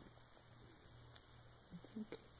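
Near silence: a faint, steady low electrical hum, with a few soft short sounds near the end.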